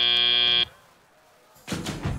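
FRC field end-of-match buzzer: a steady electronic buzz that cuts off suddenly just over half a second in, marking the end of the match. After a short silence, music with a heavy beat starts near the end.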